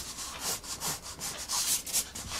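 Col-Erase colored pencil scratching across Bristol board in repeated sketching strokes, about two or three a second.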